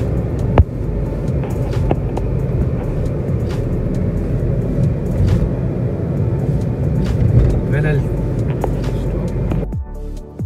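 Steady rumble of tyres and engine heard from inside a car cabin at highway speed, with a sharp click about half a second in.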